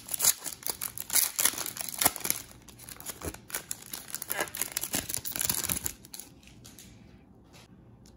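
A foil trading-card pack wrapper being torn open and crinkled by hand, a dense run of crackles that dies away about six seconds in.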